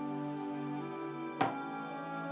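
Background music with held chords, over water poured from a measuring jug into a saucepan of cherries and juice. A single sharp knock comes a little after halfway.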